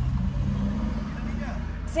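Car engine running, a steady low hum and rumble heard from inside the cabin.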